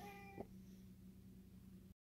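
One short, faint meow at a steady pitch, under half a second long, from a tortoiseshell house cat.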